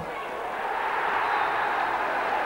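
Football crowd cheering as a goal goes in, the noise swelling over the two seconds.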